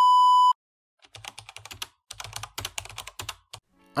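A steady test-card beep sounds for about half a second and cuts off. After a short gap comes about two and a half seconds of rapid, irregular clicking, like typing on a computer keyboard.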